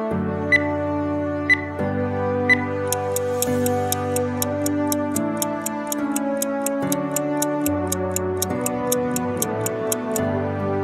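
Soft background music with three short high beeps a second apart near the start: a workout countdown timer. From about three seconds in, a stopwatch ticking sound effect runs over the music at about four ticks a second, timing the rest period.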